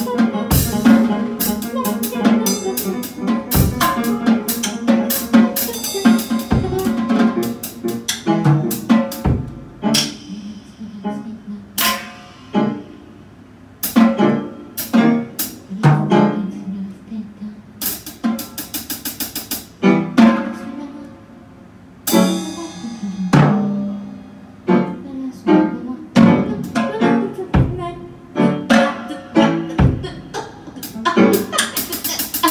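Free-improvised jazz: drum kit played in irregular, scattered hits and cymbal strokes over piano, with no steady beat and a couple of brief lulls.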